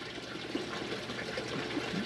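Water running through an NFT (nutrient film technique) hydroponic system: a steady trickle that sounds like a little waterfall or pond.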